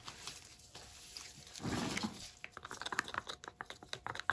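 Handling of a small plastic paint cup with a hinged lid and a wooden stir stick: a brief soft rustle about halfway through, then a quick run of small clicks and taps in the second half as the lid is opened and the stick works the paint.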